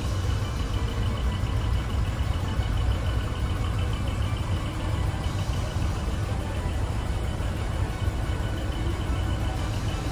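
Steady low rumble of truck diesel engines idling, with music playing faintly underneath.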